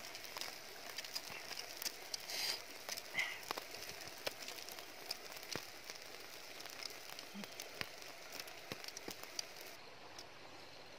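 Campfire embers crackling, with irregular sharp pops and clicks over a steady hiss.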